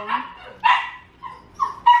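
A small dog giving a string of short, high-pitched yips and whines, about five in two seconds.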